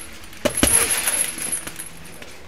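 Bare-handed strikes landing on a hanging heavy punching bag: two hits in quick succession about half a second in, followed by a brief metallic jingle from the bag's hanging hardware.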